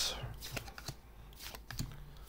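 Panini trading cards being handled and flicked through by hand: several light, separate clicks and slides of card against card.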